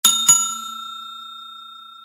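A notification-bell sound effect: a bell struck twice in quick succession, then ringing on in one clear tone that slowly fades.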